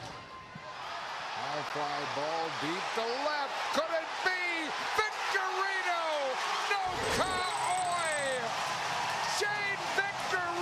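A sharp crack of the bat at the very start, then a ballpark crowd cheering a walk-off home run. The cheer swells over the first few seconds into a loud, sustained roar full of shouts and whoops.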